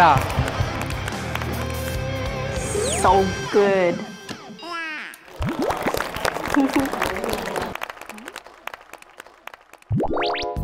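Background music with short snatches of voice and cartoon-style sliding sound effects; it thins out and grows quieter over the last couple of seconds.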